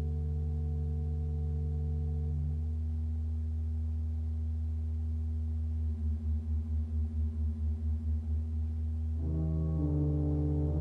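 Pipe organ holding a deep, sustained pedal drone under a soft chord. The upper notes die away a couple of seconds in, the low notes throb in a beat about five times a second for a few seconds, and a fuller chord with higher notes enters near the end.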